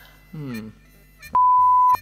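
A single steady censor bleep, one pure beep a little over half a second long, near the end, after a short bit of voice.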